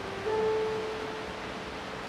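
A single held note from a keyboard instrument starts a moment in and fades away over about a second and a half.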